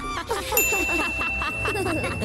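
A bell-like ding: one clear high tone struck about half a second in and ringing on steadily for about two seconds. It is the notification-bell sound effect of a subscribe-button animation.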